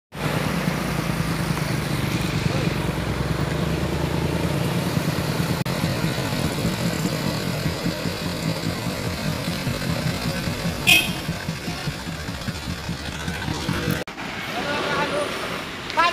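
Heavy diesel truck engine running close by, a steady low drone, as road traffic passes on a hill. A brief high hiss about eleven seconds in. After a cut near the end, people's voices.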